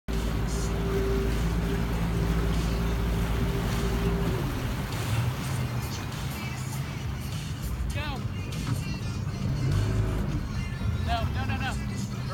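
Pontoon boat's outboard motor running under way with a steady hum over water and wind noise; its pitch drops about four seconds in as the throttle comes back. Short voice calls and whoops come in near the end.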